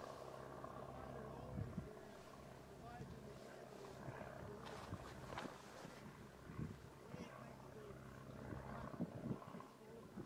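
Faint murmur of distant onlookers' voices over a low rumble from an erupting volcanic crater fountaining lava. There are a few short, sharper pops around the middle and near the end.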